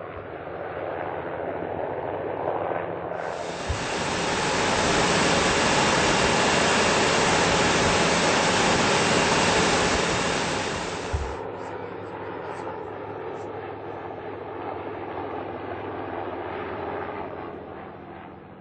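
Sikorsky H-34 helicopter's radial piston engine and rotor running in flight. From about three seconds in until about eleven seconds the sound is a louder, steady roar of engine and rushing air as heard on board. Before and after that it drops back to the quieter sound of the helicopter flying past.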